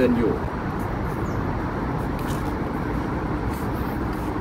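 Steady low outdoor background rumble picked up by a phone's microphone, with no distinct events; a word trails off right at the start.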